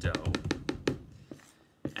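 A spoon knocking and scraping against a mixing bowl while stirring thick cornstarch-and-conditioner cloud dough: a quick run of sharp knocks in the first second, then two more spaced out.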